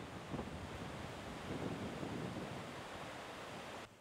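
Floodwater from a swollen river rushing steadily over a weir and pouring out of a sluice outlet. The river is running high after heavy rain.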